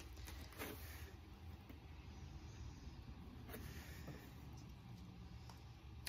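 Faint handling of a plastic dish soap bottle as its cap is worked open, with a couple of soft clicks over a low, steady room hum.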